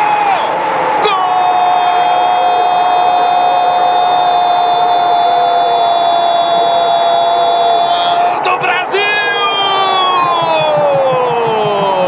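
Portuguese-language football commentator's drawn-out goal shout ('Gol!'), held on one high pitch for about seven seconds, over a cheering stadium crowd. A second long call follows that slides down in pitch near the end.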